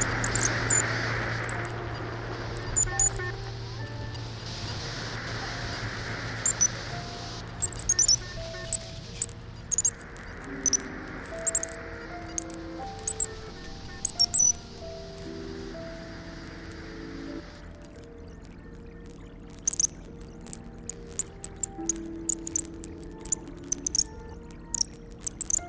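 Experimental noise music made with a Buchla synthesizer, found radio sounds and electric bass. A low steady hum drops out about ten seconds in, and hiss swells up and fades every five seconds or so under short held tones that step in pitch. Sharp crackling clicks run through it and grow dense in the last few seconds.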